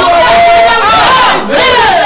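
Several people shouting fervent prayers at once, loud and overlapping.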